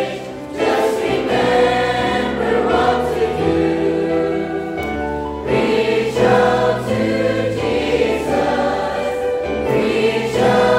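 Mixed choir of men's and women's voices singing a gospel hymn in parts, with short breaks between phrases just after the start and about halfway through.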